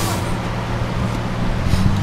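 Tuk tuk engine running with a steady low drone, heard from inside the open passenger cab with street traffic around it; its pitch rises slightly near the end.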